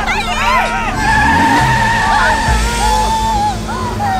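Cartoon sound effects of a car speeding off: an engine revving up, then a long steady tire squeal lasting about a second and a half, with voices and music underneath.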